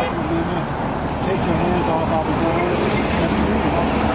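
A person talking over steady street traffic noise.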